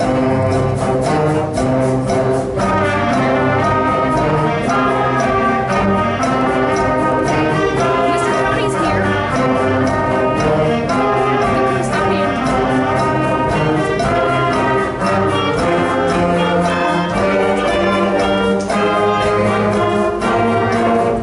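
Middle-school concert band playing, brass and woodwinds sounding together over regular percussion beats.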